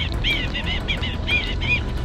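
A bird chirping in a quick series of short, arched notes, about eight in two seconds, over a steady low rumble.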